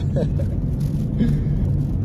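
Steady low rumble of a car heard from inside its cabin, with a brief voice sound at the start and another about a second in.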